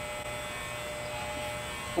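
Electric hair clippers buzzing steadily as they are run through a long-haired cat's fur.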